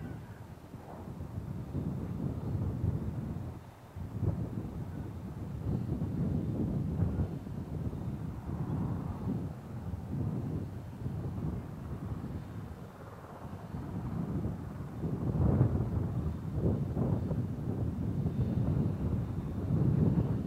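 Wind buffeting an outdoor microphone: a low, uneven rumble that swells and fades every second or two.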